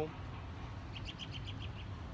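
A small bird chirping: a quick run of about eight short, high chirps starting about a second in, over a low, steady background rumble.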